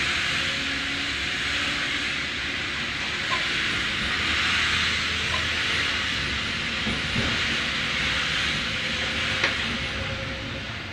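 Steady rushing noise of a train in motion heard from on board: wheels rolling on the rails and air rushing past, with a few faint sharp clicks every couple of seconds.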